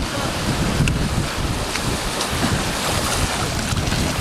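Wind buffeting the microphone over the steady wash of sea water among shore rocks.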